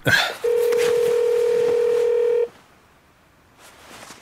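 Telephone line tone for a phone call: a single steady mid-pitched tone held for about two seconds, then cut off abruptly.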